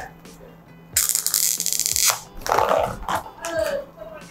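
Stiff clear plastic lid being pulled off a black plastic takeaway meal tray: a loud crackle of plastic lasting about a second, then more crinkling and rustling as the lid is set aside.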